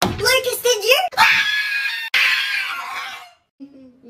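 A person's voice exclaiming, then a loud, shrill scream starting about a second in and lasting about two seconds, with a sudden break partway through, in a panicked comic reaction.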